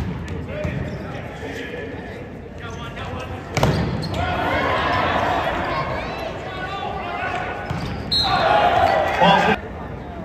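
A volleyball struck hard in a large, echoing gym during a rally: a sharp smack of a jump serve right at the start and another hit a few seconds in. Players' shouts and crowd voices fill the rest, loudest near the end as the point is won.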